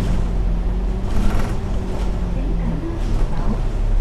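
Cabin sound of an Alexander Dennis Enviro500 MMC double-decker bus on the move: a steady engine drone with road noise and a low hum that fades about three seconds in. A brief hiss comes about a second in.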